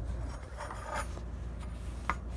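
Faint scraping and rubbing of handling noise, strongest about halfway through, over a steady low hum.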